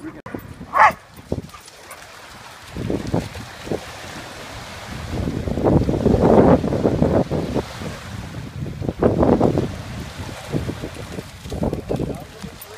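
Gusty wind buffeting the microphone over water lapping at the shoreline, swelling loudest a few seconds past the middle and again later. A short sharp sound comes about a second in.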